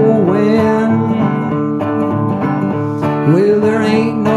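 Resonator guitar playing an instrumental passage of a country-folk song, chords ringing steadily.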